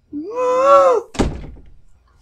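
A person's drawn-out vocal cry, rising and falling in pitch, then a door slamming shut about a second in with a heavy thud that dies away quickly.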